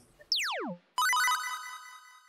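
TV editing sound effects: a quick falling swoop in pitch, then about a second in a bright electronic chime of a few notes that rings and fades away.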